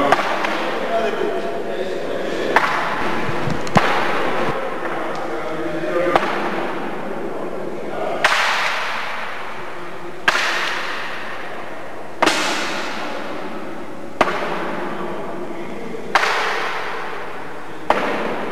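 Sharp knocks, at first irregular and then about every two seconds, each trailing off in a fading hiss, over a murmur of voices in a reverberant room.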